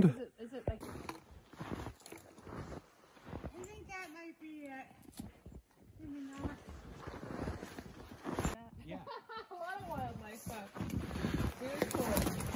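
Snowshoe footsteps crunching in snow at an uneven pace, louder near the end, with a faint distant voice speaking briefly twice.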